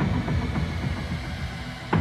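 Background music with a dark, pulsing low end and a sharp hit near the end.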